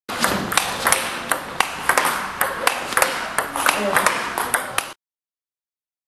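Table tennis rally against a returnboard: sharp clicks of the celluloid ball on bat, table and board, about three a second. The sound stops abruptly about a second before the end.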